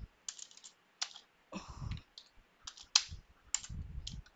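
Computer keyboard typing: a handful of single keystrokes at an uneven pace, the sharpest about three seconds in.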